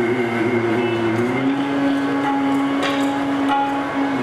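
Sikh shabad kirtan: a male voice singing, gliding into one long held note about a second and a half in. A few light percussive taps sound near the end.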